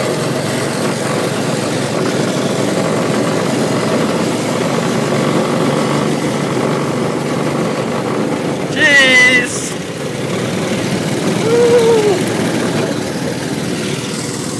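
Go-kart engine running steadily under way, with a short high-pitched shout about nine seconds in and a brief voice near twelve seconds.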